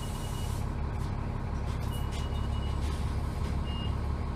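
Cabin sound of a 2001 New Flyer D30LF transit bus, its Cummins ISC inline-six diesel running with a steady low drone. A thin, high electronic beep sounds in short repeated stretches near the start and about two seconds in, with a brief one near the end. A hiss fades out in the first half-second.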